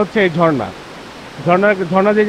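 Talking: a voice falling in pitch as it trails off, a pause of under a second with only a faint steady hiss, then talking again.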